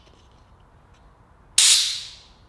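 A sudden short blast of compressed air from an air-line blow gun through the washer-jet passage of an Audi rear wiper motor housing, starting about one and a half seconds in and hissing loudly. The passage blows through freely after its cleaning: nice and clean.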